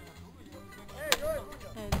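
A pine branch cracking sharply about a second in, then a second, louder crack near the end, with voices calling out around them.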